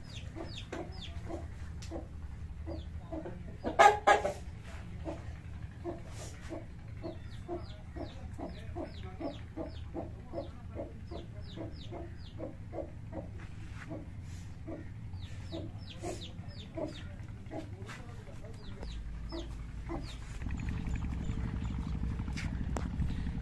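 Domestic chickens clucking and calling over and over in short notes, with one louder call about four seconds in. A steady low engine hum comes in near the end.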